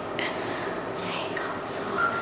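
A faint, indistinct, whispery voice with a few soft hissing sounds over a steady background hiss.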